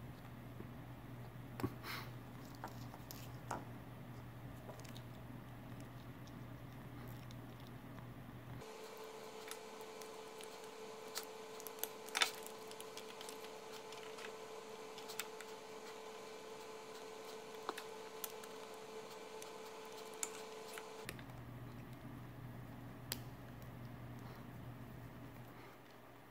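Faint, scattered clicks and ticks of small plastic plug parts and wires being handled and fitted together. Underneath runs a low steady hum, which gives way to a higher steady whine with a light hiss for about twelve seconds starting about a third of the way in, then returns.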